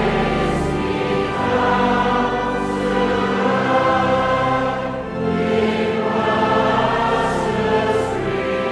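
A choir singing a hymn in slow, long held notes, with brief breaks between phrases.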